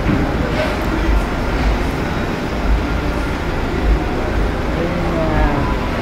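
Motor vehicles running and pulling away on a ferry's enclosed car deck, a steady low engine rumble over a constant background noise, with people's voices faint in the mix.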